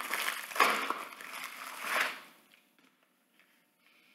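Plastic poly mailer bag crinkling and tearing as it is pulled open by hand, stopping about two seconds in.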